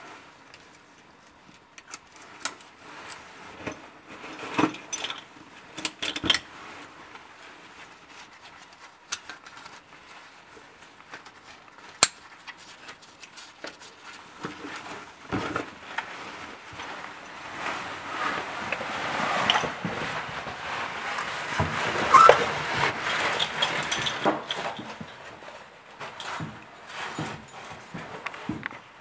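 Metal caving hardware being handled at a bolt anchor: scattered clinks and clicks of carabiners and a maillon, with one sharp click about twelve seconds in. From about the middle to near the end the caver's suit and gear rustle and scrape against the rock more steadily as the caver moves.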